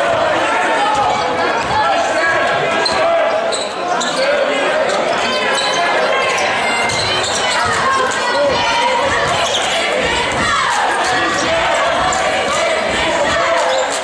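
A basketball dribbling and bouncing on a hardwood gym floor, with steady unintelligible crowd chatter and shouts echoing through the gymnasium.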